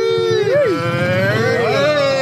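Several people's voices hollering long, drawn-out calls that bend up and down in pitch, overlapping in the second half.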